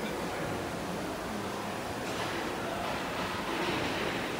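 Steady background noise of a large factory hall.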